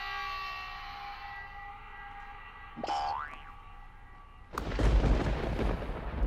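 Added comedy sound effects: a held synthesized chord fading away, a quick rising boing about three seconds in, then a loud rumbling, explosion-like crash from about four and a half seconds.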